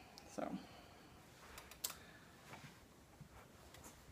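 Faint handling noises from fabric craft bags being picked up and held up: soft rustling with a few small clicks around the middle.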